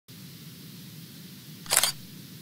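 Sound effect of a news intro logo: one short, sharp burst of noise lasting about a third of a second near the end, over a faint low hum.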